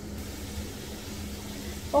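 Steady low rumble and hiss of a gas stove burner turned up high under a pot of simmering tomato-onion masala, with a faint steady hum underneath.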